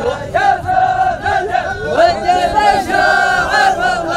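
A group of men chanting together in long held notes, the sung war chant of a Dhofari hbout (هبوت) men's line dance.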